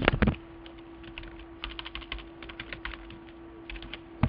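Computer keyboard typing: a run of irregular key clicks as a name is entered, over a steady low hum.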